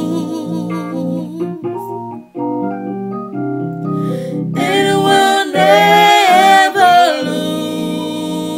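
Gospel singing over sustained organ-like keyboard chords. The first half is mostly held keyboard chords under quieter singing, then a voice comes in strongly with a wavering, ornamented line about halfway through before the chords carry on alone near the end.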